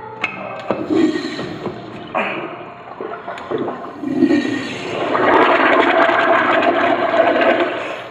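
Porcelain wall-mounted urinal flushing: water rushes through the bowl, swelling about four seconds in, holding strong, then easing off near the end. It is a test flush showing the repaired urinal now works.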